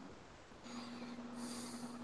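Quiet pause with faint sounds: a steady low hum starts about a third of the way in, with a brief soft hiss near the middle.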